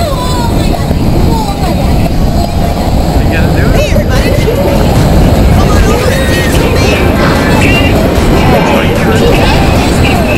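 A loud, dense mix of overlapping children's voices and squeals over indoor crowd din and music.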